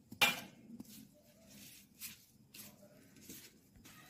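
Hands mixing crumbly maize-flour and grated-radish dough in a steel plate: a series of short rustling scrapes, the loudest just after the start.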